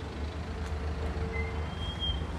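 Low, steady rumble of a motor vehicle's engine running in the street, with a faint steady tone through most of it and a brief high beep near the end.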